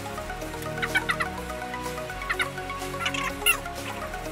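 Background music with short clucking calls like a chicken's cutting in three times: about a second in, midway, and again near the end.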